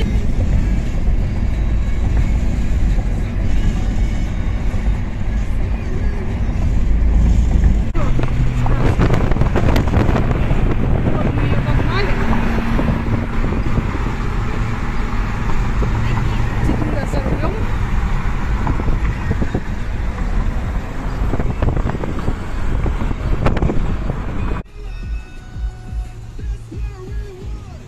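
Road and wind rumble inside a moving car, with music and voices playing over it. The sound drops suddenly near the end.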